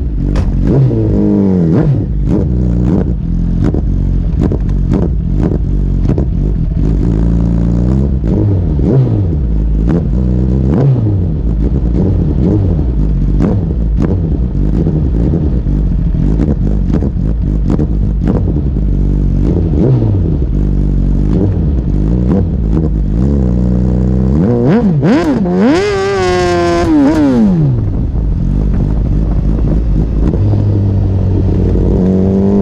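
Suzuki GSX-R sport bike engine revving up and falling back through gear changes, with one long high rev climb and drop near the end. Short clattering knocks from wind and road buffeting on the bike-mounted camera throughout.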